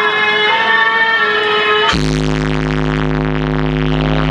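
Loud DJ music from a truck-mounted sound system's speaker stacks: a synthesizer melody, cutting abruptly about halfway through to a deep, sustained bass chord with a fast buzzing pulse above it.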